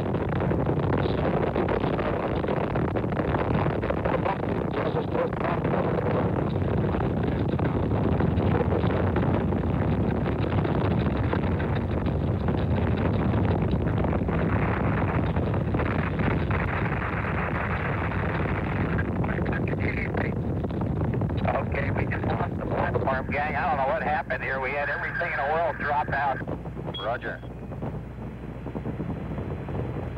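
Saturn V rocket roar, a continuous rumbling crackle with a windy, buffeting edge from the microphone. It thins out about two-thirds of the way through, when faint radio voices come through.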